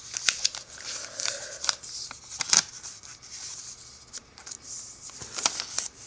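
Origami paper being folded and pressed flat by hand: soft rustling with scattered crisp crackles, the loudest about halfway through and again near the end.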